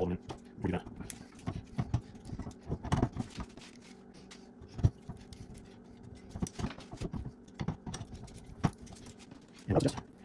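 Scattered light clicks and knocks of hands handling and fastening the metal hardware of a CNC machine's Z-axis assembly as it is fitted to its mounting plate. The sharpest knock comes a little before five seconds in, over a faint steady hum.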